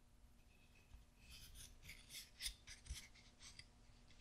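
Faint scraping and rubbing of a flat spearhead blade being pushed into the sawn slot in the end of a wooden dowel: a run of short, scratchy strokes from about a second in until near the end.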